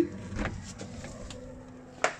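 uPVC back door being opened and passed through: a short clatter of handle and latch about half a second in, then a steady low hum until a sharp click at the very end.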